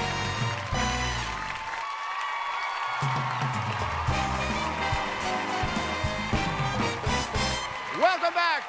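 Television show theme music with audience applause underneath; the bass drops out briefly about two seconds in.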